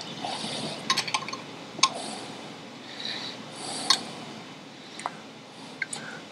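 A wrench snugging down the bolts that join a Ford Model T brake drum to its drive plate: a few sharp, irregular metal clinks, three of them close together about a second in, with short scraping rubs between.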